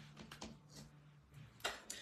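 Quiet room tone with a few faint clicks from handling paper craft pieces on a cutting mat, and one sharper click a little before the end.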